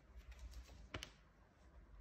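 Faint clicks and light taps of a tarot card being handled and laid down on a spread of cards, with one sharper tap about a second in.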